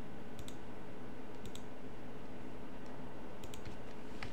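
A few faint, scattered clicks at the computer (a pair about half a second in, one at about a second and a half, another pair near the end) over a steady low background noise.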